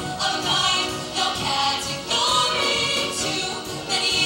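A group of girls singing together into handheld microphones, as a pop vocal ensemble performing on stage.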